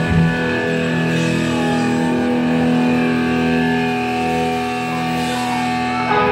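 Electric guitars ringing out a held chord through the amps, played live by a rock band. A fresh strum and a change of notes come right at the end.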